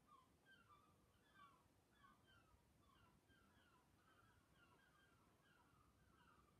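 Near silence, with faint bird chirps: many short notes repeating throughout.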